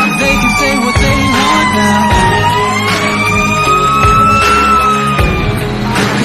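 A fire engine siren wails slowly, falling and then rising in pitch, and fades out near the end. A loud backing song with a beat plays over it.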